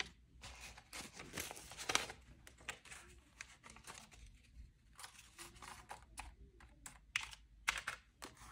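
Paper banknotes rustling and crinkling as they are handled and laid on a cash envelope, with many light clicks and taps. It is faint, with louder handling about two seconds in and again near the end.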